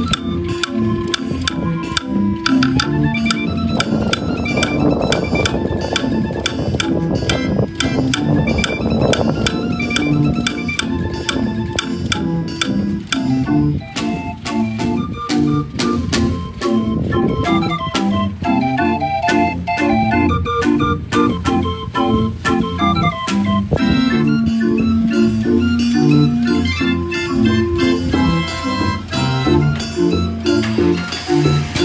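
45-key Johnny Verbeeck street organ playing a tune from folded cardboard book music: wooden pipes in bourdon celeste, violin and flute registers, with its built-in bass drum, snare drum and woodblocks keeping the beat.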